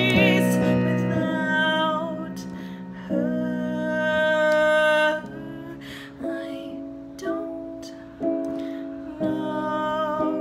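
A woman singing a slow original song over accompanying chords, her voice held with vibrato on long notes. In the second half the chords change about once a second, each starting sharply and fading before the next.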